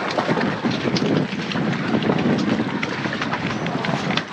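A mooring line being tied off on a dock cleat: rope rubbing and many small clicks and knocks over a steady rushing background.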